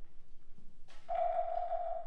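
Contemporary chamber-ensemble music: a quiet pause, then about a second in a sharp struck attack that opens into a held mid-pitched note, with a second attack at the very end.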